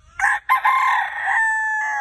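A Goldenboy x Dome cross gamecock crowing: a short opening note, a brief break, then a long drawn-out call that narrows to a steady held tone near the end.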